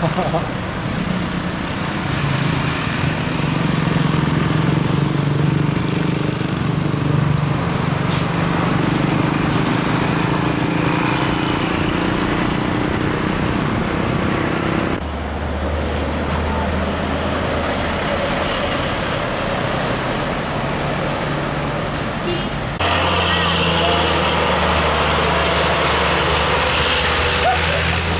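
Diesel intercity coach engines pulling past at the roadside, one coach's engine note rising as it climbs away. The sound changes abruptly twice as different coaches pass.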